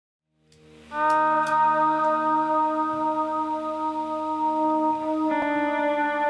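Guitar intro of a folk-rock song on acoustic and electric guitars: long held notes that fade in and ring on, with a new chord struck near the end.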